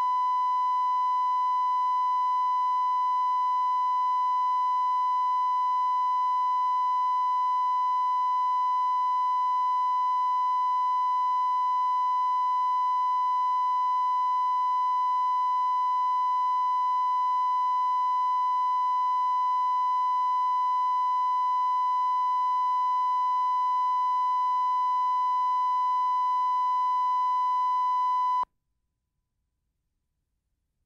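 Steady 1 kHz line-up reference tone from a broadcast tape's colour-bars leader, holding one constant pitch and level, then cutting off suddenly near the end.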